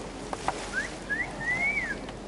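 A few short whistled notes, each gliding upward, the last and longest rising then falling, over a steady outdoor background; two faint clicks come just before them.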